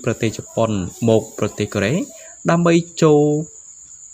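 A man narrating in Khmer, speaking in quick phrases with a short pause near the end, over a steady high-pitched whine.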